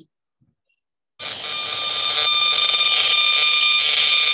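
Radio signals from a cell phone antenna mast about 150 m away, made audible by a handheld RF meter: a loud, steady high-pitched whine of several held tones over a hiss, starting about a second in.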